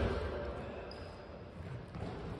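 Echo of a shouted call dying away in a large sports hall, then low, even hall noise with faint sounds of play and a brief faint high squeak about a second in.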